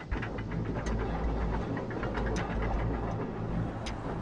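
Ship's anchor chain paying out as the anchor is let go: a heavy, steady low rumble with irregular metallic clanks from the chain links.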